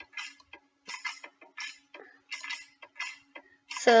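Short, irregular taps and clinks of food and dishes being handled on a plate and a wire cooling rack.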